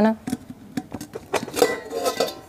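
Stainless steel lid being worked off a steel container: a series of separate sharp metal clinks and knocks, some with a short ring.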